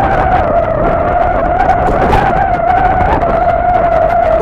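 Riding a bicycle: loud wind and rolling noise on a hand-held phone's microphone, with a steady high whine and scattered rattles and clicks throughout.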